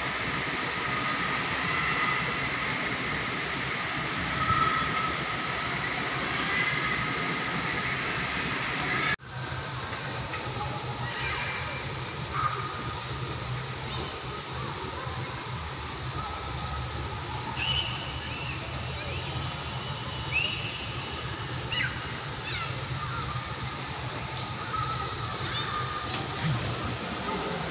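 Outdoor ambience above a busy residential pool: a steady hum of background noise with faint, distant voices. The background changes abruptly about nine seconds in, and the second half holds a few short, high rising chirps.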